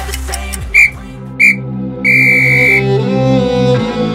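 Interval timer beeps: two short electronic beeps and then one longer beep, all at the same high pitch, signalling the end of the work interval. Underneath, background music changes from a hip-hop beat to slow, sustained low notes.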